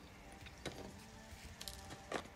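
Quiet room with two soft handling clicks, one about two thirds of a second in and one near the end, as fingers press tracing paper down on a wooden spreading board.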